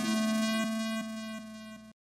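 A steady, buzzy synthesizer tone held on one pitch, fading away in a few steps and cutting to silence just before the end.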